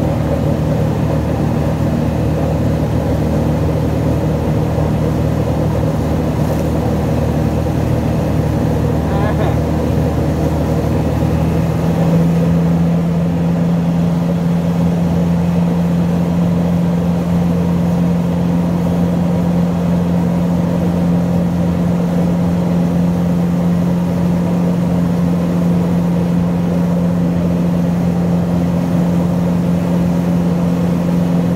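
Motorboat engine running steadily under way, its note changing about twelve seconds in as the lower drone drops out and a steadier hum takes over.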